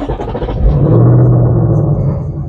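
2024 Ford Mustang Dark Horse's 5.0-litre V8 starting up, heard from inside the cabin: it catches suddenly and flares to its loudest about a second in, then begins to settle toward idle near the end.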